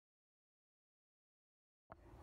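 Dead silence with the sound track muted, ended by a short click near the end as sound cuts back in.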